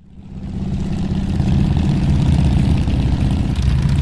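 An engine sound effect under a logo sting: an engine running steadily at a fairly constant pitch. It fades in over about the first second and begins fading out near the end.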